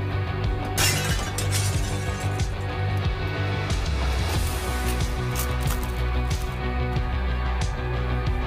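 Background music, with foil trading-card pack wrappers crinkling and tearing over it, loudest about a second in and with shorter crackles later.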